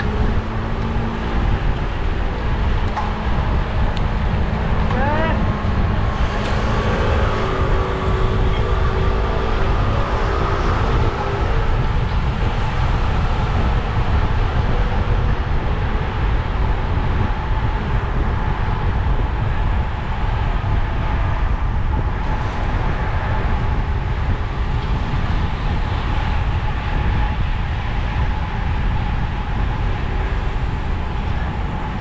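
Wind rushing over the microphone of a camera on a road bike moving at speed, a loud steady low rumble. Faint held tones sit above it in the first dozen seconds.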